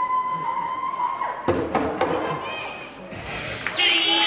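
A basketball bouncing twice on a hardwood court at the free-throw line, about a second and a half in, after a long steady whistle-like tone cuts off. Crowd noise rises later, and music starts near the end.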